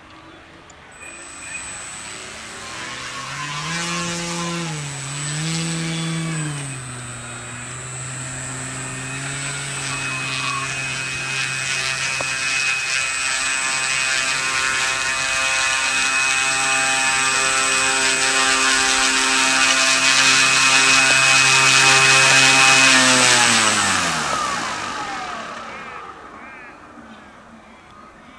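Model aircraft engine of a 1/4-scale Pilot DH82 Tiger Moth RC biplane, blipped twice to higher revs a few seconds in, then idling steadily and growing louder as the model taxis closer. Near the end it is cut and winds down to a stop, its pitch falling.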